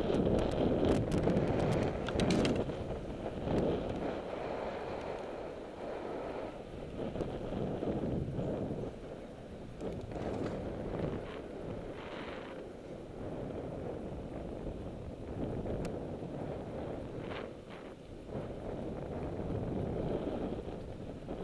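Wind rushing over the microphone of a camera on a moving bicycle, with a low road rumble. A burst of clicks and rattles comes in the first two or three seconds, with a few single clicks later.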